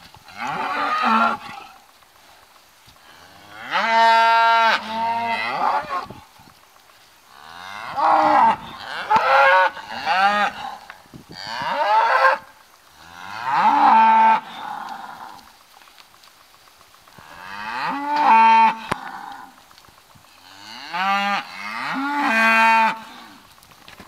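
Cattle mooing: a series of long, drawn-out moos from cows and calves, a bout every few seconds with quiet gaps between, some moos bending up and down in pitch.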